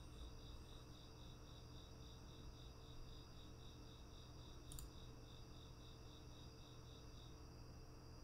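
Near silence: faint room tone with a low steady hum and a faint high-pitched pulsing tone, about four pulses a second, that stops near the end. One faint click about five seconds in.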